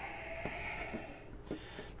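Faint handling noise with a few light clicks, as hands work a synthetic cork in the neck of a beer bottle.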